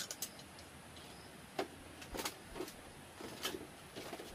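A few light, scattered clicks and knocks of objects being handled, over a faint steady background hiss.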